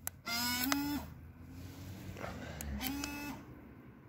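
Two short novelty-horn sounds from the Citroën 2CV's added remote-controlled sound system, each a buzzy tone that steps up in pitch partway through. The first lasts under a second and the second is shorter, about two seconds later. A sharp click comes just before the first.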